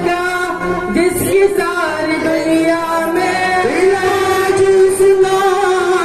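A group of young male voices singing a qawwali through microphones, in long held notes with sliding pitch ornaments.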